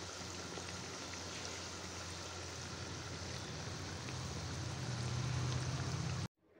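Breaded potato and paneer rolls deep-frying in hot oil in a karai: a steady sizzle, with a low hum underneath that grows slightly louder near the end.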